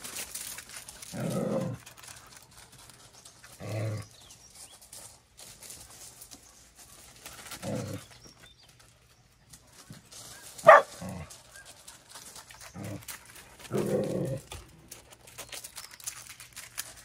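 Dogs giving short, low woofs and grumbles every few seconds, with one sharp, loud bark about eleven seconds in.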